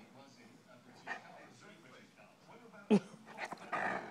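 Great Dane puppy giving one short, loud bark about three seconds in, with quieter whimpering noises around it.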